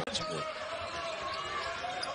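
Basketball game sound from the arena floor: steady crowd noise, with a couple of ball bounces shortly after the start.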